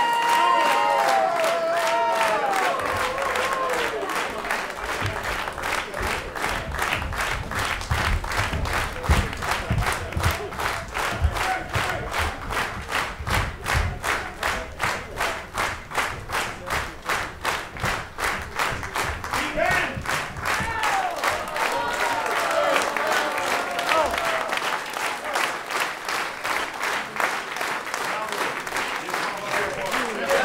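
Concert audience clapping in unison, a steady rhythm of about two claps a second, demanding an encore. Voices shout near the start and again about twenty seconds in, and low thumps sound under the clapping in the first half.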